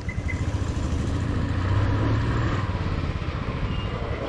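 Royal Enfield Classic 350's single-cylinder engine running at low speed with a steady thump, pulling a little harder about halfway through, heard from the rider's seat.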